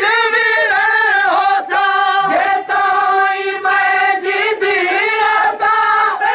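A male reciter singing a Saraiki noha, a Shia lament chant, amplified through a microphone, in long held notes with a wavering pitch and short breaks between phrases.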